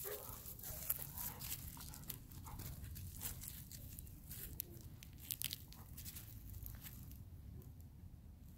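Footsteps of a person and a dog on dry grass and dead plant debris: scattered crunching, rustling and crackling over a low steady rumble, thinning out near the end.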